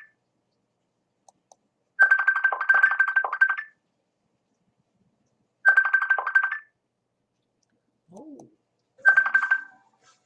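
Mobile phone ringtone ringing for an incoming call: three bursts of a high, rapidly pulsing tone, each about one to two seconds long, with silent gaps between them.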